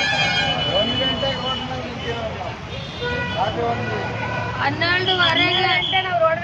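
Several people's voices talking over one another, with road traffic running steadily underneath.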